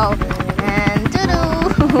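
Helicopter rotor sound for a toy helicopter: a fast, even chopping beat that runs through the moment.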